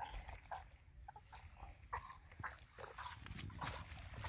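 Faint, irregular short yelps from a dog.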